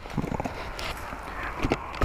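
Wind noise on the microphone with a few light knocks and rustles from gloved hands handling the motorcycle.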